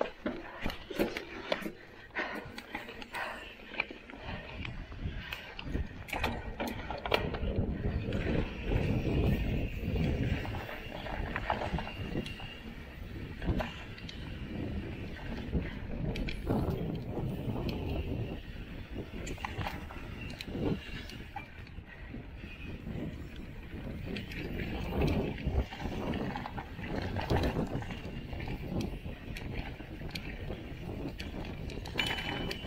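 Mountain bike riding a rough dirt trail: tyres rolling over dirt and rock with a steady low rumble, and the bike rattling with frequent clicks and knocks over the bumps, many of them in the first several seconds.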